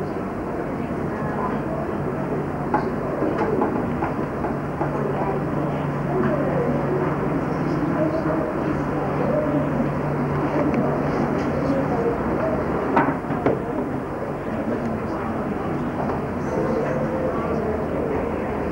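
Indistinct chatter of many students talking at once in a classroom, over a steady low hum, with a few sharp knocks, the loudest about thirteen seconds in.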